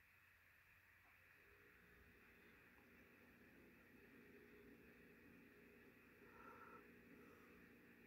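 Near silence: faint room tone, with a faint steady low hum coming in about a second and a half in.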